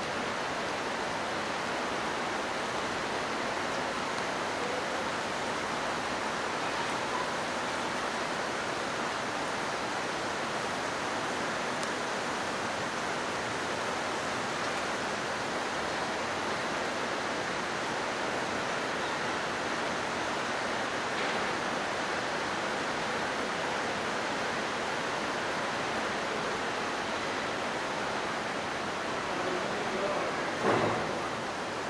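A steady, even rushing hiss that does not change, with no distinct events.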